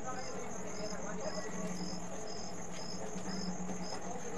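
Crickets chirping: a short high chirp repeating about twice a second over a steady high trill, with a faint low hum underneath.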